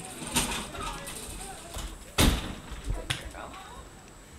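Faint voices in the background, with a sharp knock a little over two seconds in and a few lighter clicks around it.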